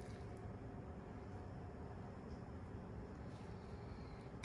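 Quiet room tone with a few faint, soft taps as cooked chicken pieces are picked from a glass bowl and set down on sauced bread.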